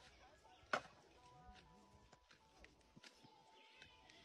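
Faint footsteps on a grassy dirt path, with one sharp knock about a second in.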